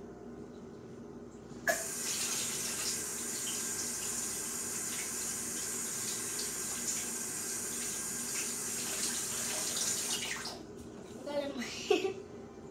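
A kitchen sink tap is turned on about two seconds in and water runs steadily and evenly for about eight seconds, then it is turned off.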